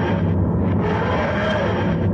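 Intro soundtrack of a channel title sequence: a loud, steady, dense rumbling mix with a low droning bass.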